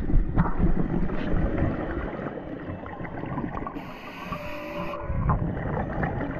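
Scuba diver breathing through a regulator underwater: a rumble of exhaled bubbles, a short hiss of inhalation about two-thirds of the way through, then bubbles again. Faint whale calls glide up and down in the background around the inhalation.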